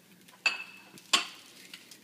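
Butter knife scraping across toast and clinking on a ceramic plate, with a second, louder clatter of the plate against others; two sharp clinks about two-thirds of a second apart, the first with a brief ringing tone.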